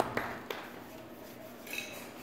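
A few last scattered claps from a small audience dying away in a quiet room, then a faint clink of dishes or glass near the end.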